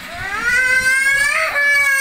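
A young child's high voice holding two long, drawn-out notes, pitch rising slightly, with a short break about one and a half seconds in.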